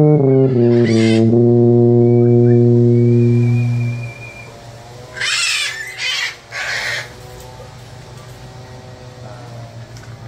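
Tuba playing a few quick descending notes, then holding one long low final note for about three seconds before stopping. About a second later come three short, loud noisy bursts.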